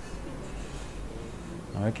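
Steady low room hum with no clear event in it, and a few faint short tones in the middle. A man's voice starts near the end.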